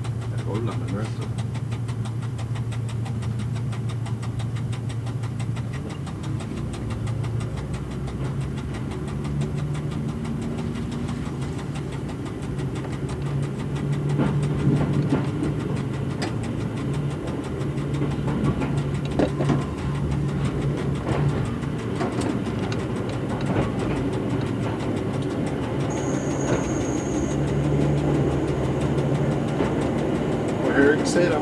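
Y1 railcar's Volvo diesel engines pulling away and gathering speed, the low engine note rising and changing pitch in steps. Sharp clicks of the wheels over rail joints and points come in the middle of the run.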